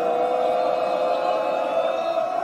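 Large crowd of football supporters singing a chant together in unison, holding long sustained notes.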